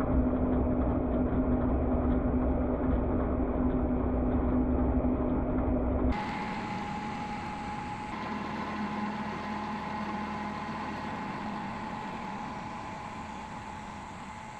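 Small farm tractor's engine running steadily with its rear rotary tiller working the soil, loud and close for about six seconds, then suddenly more distant and quieter, fading gradually as the tractor moves away down the row.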